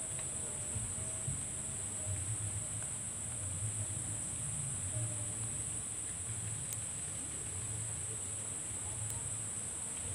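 A steady, high-pitched drone of insects, unchanging throughout, over a low rumble.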